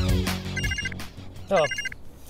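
Phone ringtone trilling in two short bursts, a high rapid warble, as a music track fades out in the first half-second.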